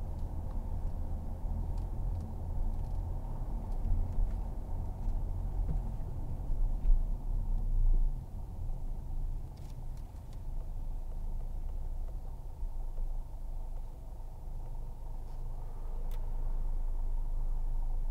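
Cabin noise of a 2015 Mercedes-Benz C300 BlueTEC Hybrid on the move: a steady low rumble of tyres and drivetrain. It is a little louder in the first half and settles lower after about eight seconds.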